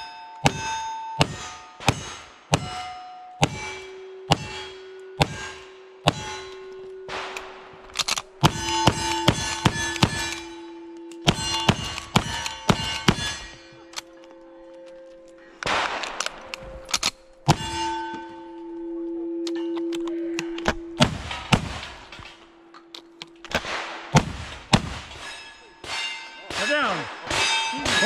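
Rapid gunfire from a pair of Ruger Single-Six .32 H&R revolvers loaded with black powder, each shot followed by the clang and ring of a steel target: about ten shots in the first seven seconds. More strings of shots and ringing steel follow, with long ringing tones from the struck plates between them.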